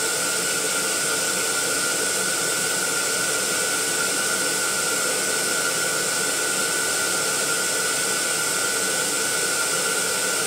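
Air pump running steadily, inflating a set of latex balloons: a constant rush of air with a thin steady whine.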